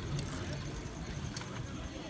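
Street ambience at night, picked up while walking with the camera: a steady low rumble with a couple of sharp clicks, and a faint, evenly pulsing high tone.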